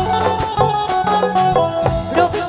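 Instrumental break of a live folk band: a plucked-string melody with held notes over regular drum and cymbal strikes, with no singing.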